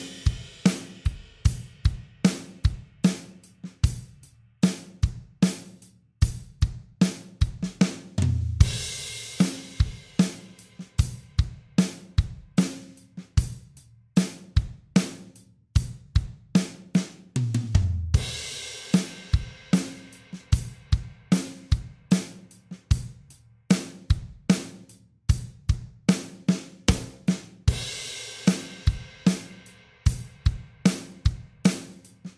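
An acoustic drum kit plays a steady groove in 3/4 time at 75 beats per minute: kick, snare and hi-hat strokes. A cymbal crash over a bass drum hit comes three times, about every ten seconds.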